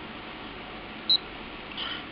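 A single short high-pitched beep from a handheld multi-function anemometer's keypad about a second in, the meter acknowledging a button press, over steady hiss.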